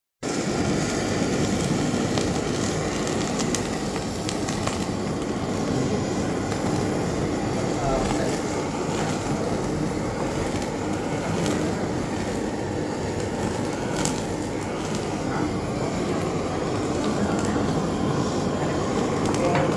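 Handheld butane blowtorch burning steadily as its flame sears mackerel.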